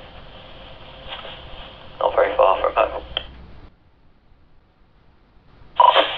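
Kenwood TK-3701D walkie-talkie speaker playing a received analog FM transmission: thin, hissy audio with an indistinct voice. It cuts off suddenly about two-thirds of the way in, and after a short near-silence a new transmission opens abruptly near the end.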